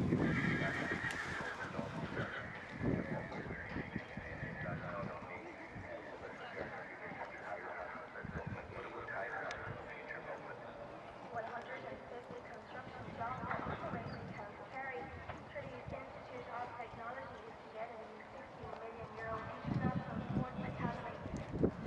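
A horse cantering in a sand arena, its hoofbeats on the soft footing, with voices talking in the background.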